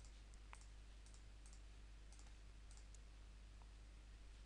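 Near silence: room tone with a faint steady low hum and a scattering of faint computer mouse clicks.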